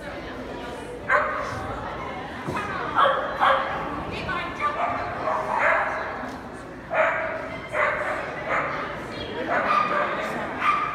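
A Shetland sheepdog barking repeatedly while running an agility course: about a dozen short, sharp barks, starting about a second in and coming in quick bunches every half second or so.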